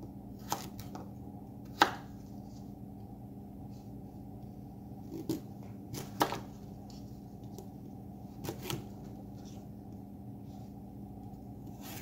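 A paring knife cutting a sweet potato into chunks on a thin plastic cutting mat over a wooden table: scattered, irregular knocks as the blade goes through and strikes the mat, the loudest about two seconds in.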